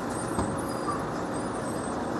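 Steady rumble of an idling vehicle engine, with a single brief knock about half a second in.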